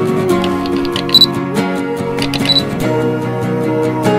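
Music with camera sound effects laid over it: sharp shutter-like clicks and two short high beeps, about a second in and again about two and a half seconds in.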